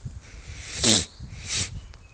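Two short breath noises from a man close to the microphone in a pause between sentences: a loud, sharp one about a second in, and a softer, hissier one half a second later.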